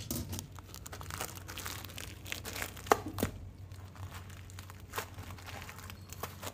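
Plastic bag of flattened green rice flakes crinkling as it is handled and opened, with irregular crackles and a few sharper clicks, the sharpest about halfway through.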